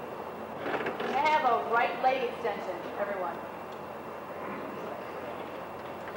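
A person's voice calling out for about two and a half seconds, high-pitched and rising and falling, over a steady background hiss.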